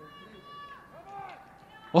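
Faint, distant voices calling out on the pitch: one drawn-out call near the start and a shorter call that rises and falls about a second in.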